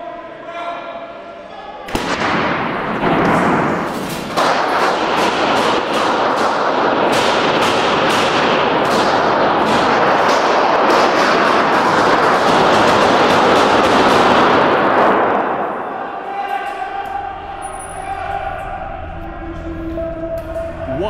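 A long volley of gunshots, many fired in quick succession, echoing in a large stone hall and heard through a phone's microphone. The firing begins about two seconds in and stops a few seconds before the end.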